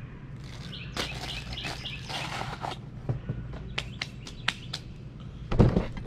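Birds chirping outdoors over a steady low hum, with scattered light rustles and clicks. A louder handling bump comes near the end.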